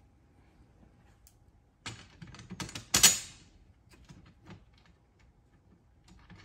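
Small metal clicks and taps of a bolt, washers and a lock nut being handled and fitted to the cart's metal frame: a cluster of clicks about two seconds in, with one sharp clink about three seconds in, then a few faint clicks.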